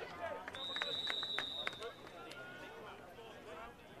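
A referee's whistle blows one steady high note for about a second, signalling that the play is dead, over faint shouting from players on the field.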